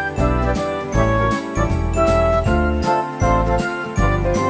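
Background music with a steady beat, a bass line and a melody of held notes.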